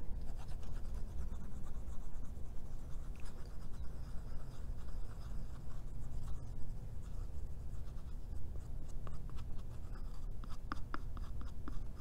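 Faint scratching and small clicks as the nozzle of a white school-glue bottle is worked along a wooden popsicle stick, with a run of sharper clicks near the end, over a steady low rumble.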